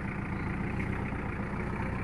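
Skid-steer loader's engine running steadily.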